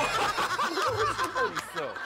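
Several people laughing together in short, overlapping chuckles.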